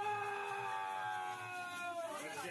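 One voice holding a long, drawn-out high cry of "oooh" for about two seconds, steady in pitch and sagging slightly as it ends.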